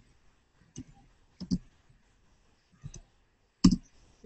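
A few separate computer keyboard keystrokes, short clicks spaced irregularly, with the loudest one near the end.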